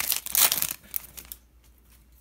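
Plastic wrapper of an O-Pee-Chee Platinum hockey card pack crinkling and crumpling in the hands as the pack is opened, dying away about a second and a half in.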